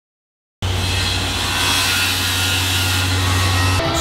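A power tool running steadily with a low hum underneath, starting after a moment of silence and cutting off abruptly just before the end.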